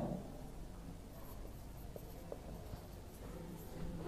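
Marker pen writing on a whiteboard: faint scratching strokes with a couple of small ticks about two seconds in.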